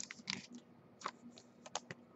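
Faint, irregular light clicks and taps, about a dozen in two seconds.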